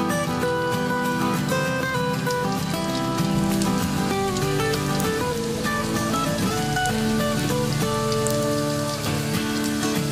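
Sausage spring rolls in lumpia wrappers sizzling and crackling in hot oil in a wok, as more rolls are added, under background acoustic guitar music.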